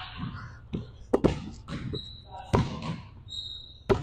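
Basketball bouncing on a hardwood gym floor, a few separate, irregularly spaced bounces, with two short high-pitched squeaks in between.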